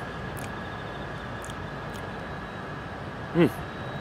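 Steady outdoor background noise with a faint steady high tone under it, then a man's short appreciative "mmm" near the end as he tastes the cigar smoke.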